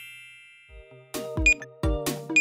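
A bright chime rings out and fades away over the first half-second, a scene-transition sound effect. About a second in, cheerful background music starts with a bouncy beat.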